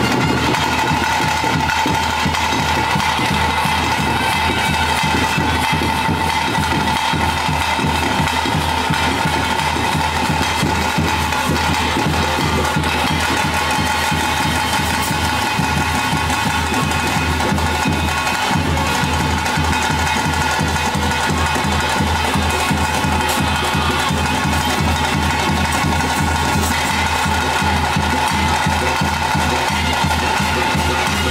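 Bhuta kola ritual music: fast, continuous drumming under a steady held high tone, played without a break.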